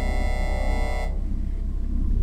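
Intro jingle music: a sustained synthesizer chord over a deep low drone. The bright upper tones fade out about a second in, leaving the low drone.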